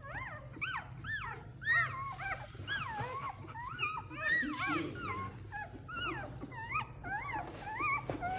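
Several newborn golden retriever puppies whining and squealing in many short, overlapping rising-and-falling cries. They are upset because their mother has shifted against them, though she is not lying on them.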